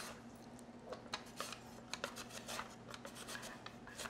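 Peeled kohlrabi pushed back and forth over a Japanese mandoline's julienne teeth: a run of short, faint slicing strokes, about two to three a second, each stroke cutting thin julienne strips.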